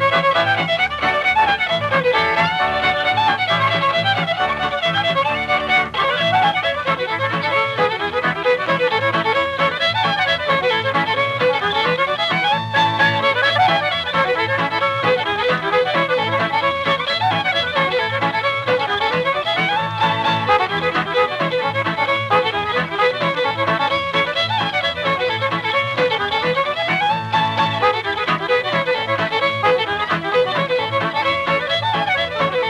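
Fiddle playing a fast hornpipe and clog-dance medley in quick running notes over a steady rhythm accompaniment, heard on an old radio transcription recording.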